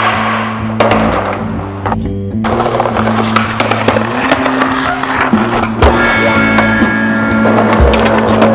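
Music playing over street skateboarding sounds: wheels rolling on pavement and several sharp clacks and scrapes of the board hitting and sliding along concrete ledges.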